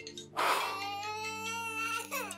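A toddler crying: one long, high wail that starts about half a second in, over soft background music.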